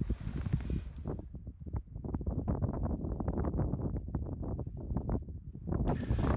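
Wind buffeting the microphone: an uneven, gusty low rush with quick flutters, steady in level.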